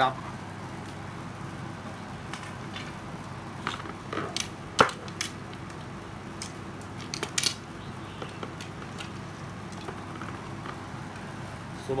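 Scattered light clicks and knocks of fishing rods being handled and set down, over steady room noise, with the sharpest knock about five seconds in.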